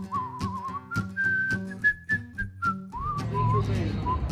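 Someone whistling a wavering tune over a strummed acoustic-guitar country song. The tune climbs higher in the middle and drops back. About three seconds in the guitar stops and the whistling goes on over steady background noise.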